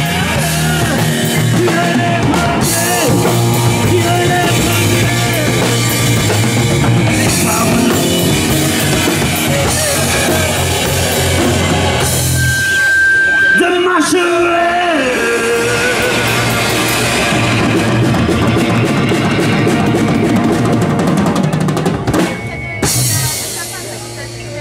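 Live rock trio of electric guitar, electric bass and drum kit playing a song. About halfway through, the band thins out to a lone held note that then slides down before the full band comes back in. The song stops shortly before the end.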